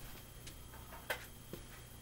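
Quiet room with two faint short clicks, about a second in and half a second apart: handling noise as a calculator is fetched.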